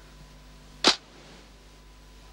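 A single sharp camera-shutter click sound effect about a second in, over a faint steady background.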